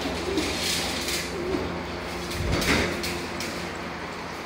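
Young black-winged kites giving a few faint, short, low calls while being fed meat in a wire-mesh cage, with soft rustling and a louder rattle about halfway through; a steady low hum runs beneath.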